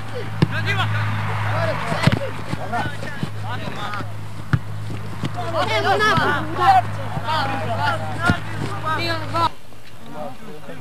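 Scattered shouts and calls from players and onlookers at an outdoor football match, with a few sharp knocks, over a steady low hum that stops abruptly near the end.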